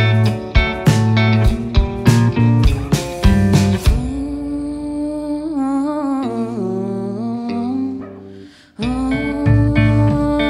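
Rock band playing live: drums, electric guitars and electric bass. About four seconds in the drums drop out, leaving a held, wavering sung line over sustained guitar that fades almost to nothing before the full band comes back in near the end.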